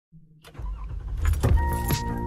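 Car sounds opening the song's intro: keys jangling and a car engine starting and running with a low rumble. About one and a half seconds in, a steady high tone and a regular beat come in as the music starts.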